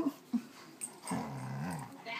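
9-month-old Vizsla giving a short, low play growl about a second in, lasting under a second, while wrestling playfully.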